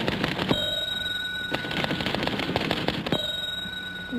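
Typewriter keys clacking in rapid bursts. The carriage-return bell dings twice, about half a second in and again just after three seconds, each time ringing on for most of a second.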